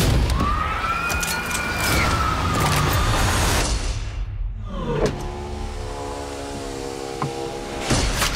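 Film-trailer sound design over steady traffic-like noise: a siren-like wail that rises and then slowly falls over the first three seconds. About four and a half seconds in comes a falling sweep, like a sound slowing to a stop, followed by a steady low drone of several tones.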